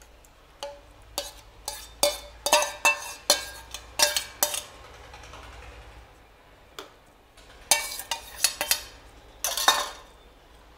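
Steel spoon clinking and scraping against stainless steel bowls as raita is stirred and spooned into a smaller serving bowl. A run of clinks comes about twice a second for the first few seconds, then a pause, then another cluster near the end.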